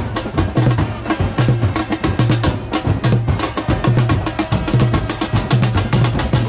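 Supporters' drum section playing: big bass drums beating a steady low pulse a little more than once a second, with rapid sharp snare hits filling in between.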